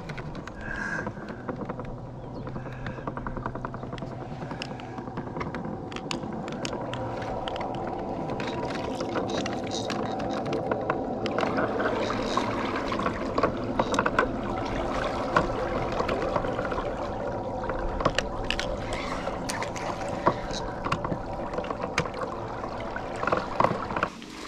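Electric trolling motor of 40 lb thrust running steadily, a hum of several level tones, with water lapping at the inflatable boat's hull and scattered light knocks.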